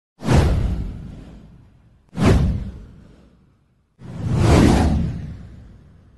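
Intro sound effects: three whooshes. The first two start suddenly about two seconds apart and each fades away over a second or so. The third swells up more slowly and then fades.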